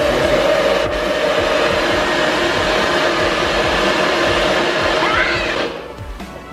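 NutriBullet 900 Series personal blender motor running at full speed, blending iced coffee with ice, in a loud steady whir. It cuts off near the end as the cup is released.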